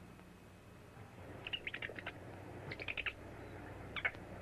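Small animal's high-pitched squeaking: a quick cluster of short chirps about a second and a half in, a second cluster about a second later, and one more squeak at the end.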